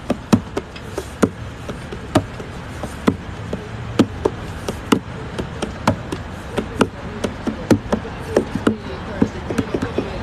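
Fingers tapping on the top of an acoustic guitar, sharp knocks roughly once a second in a loose beat, over steady street noise.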